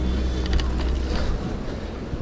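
Wind buffeting the microphone of a camera riding on a moving bicycle: a heavy low rumble that drops off suddenly about a second and a half in, with a few light clicks near the start.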